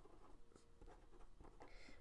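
Faint scratching of a pen drawing short strokes on paper.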